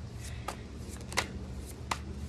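Tarot cards being handled and shuffled by hand: a few short, crisp card snaps spread through the two seconds, over a low steady hum.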